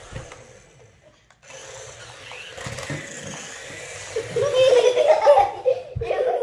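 A young child laughing loudly and excitedly, in wavering bursts from about four seconds in.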